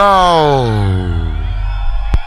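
An MC's long drawn-out shout of "no!" on the microphone, sliding down in pitch over about a second and a half, over a steady deep drum and bass bassline. Thin ringing tones hang on after the shout fades.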